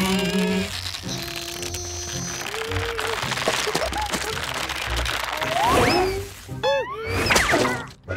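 Cartoon background music with the characters' wordless vocal noises over it: short squeaky, gliding grunts and cries, busiest near the end.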